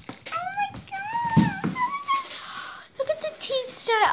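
A girl's high, wordless voice making several short gliding sounds, with some handling noise in between.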